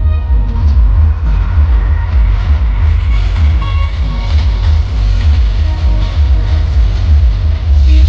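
Loud music played through a truck-mounted DJ speaker stack, with very heavy bass.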